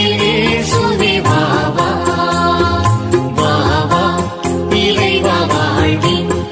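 Tamil Christian communion song playing without words sung: a melody line over sustained chords and steady light percussion.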